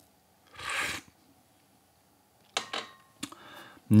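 A short slurp of tea from a small tasting cup, drawing air in with the liquid, about half a second in. Near the end come a few short clicks and faint mouth noises as the tea is tasted.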